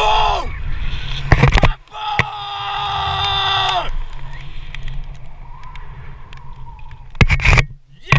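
A man yelling with excitement while swinging on a rope: one falling cry ending about half a second in, then a long held yell from about two to four seconds. Wind rumbles on the action camera's microphone, with short loud gusts about a second and a half in and near the end.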